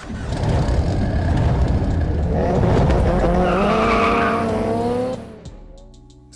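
Car sound effect: a rushing noise, then an engine revving up with tyre squeal, the pitch rising for about three seconds before cutting off suddenly about five seconds in.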